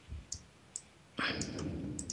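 A few light clicks of a computer mouse, followed a little past halfway by a louder rustling noise.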